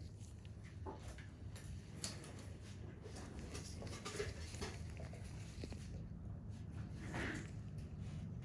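Faint room noise: a steady low hum with scattered small clicks and soft rustles.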